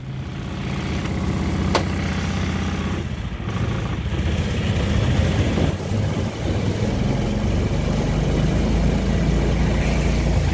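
Small engine of a Bliss Surrey curved-dash replica car running as it drives along a street, its steady low note under road and wind noise. A brief sharp sound cuts through it a little under two seconds in.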